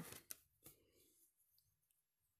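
Near silence, with a faint click and a brief soft rustle early on as hands pick up a crocheted cotton lace swatch from a wooden table.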